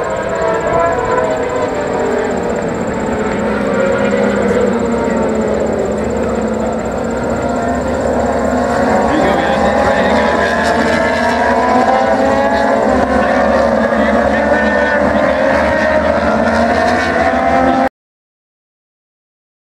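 A pack of racing motorcycles on track, many engines sounding at once with their pitches rising and falling as the bikes work through a sweeping bend, growing a little louder about halfway through.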